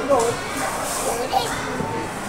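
Children at play, with short bursts of young voices at the start and again about a second and a half in, over steady background chatter.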